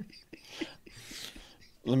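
Soft, breathy trailing laughter and whispered voices, with a man starting to speak near the end.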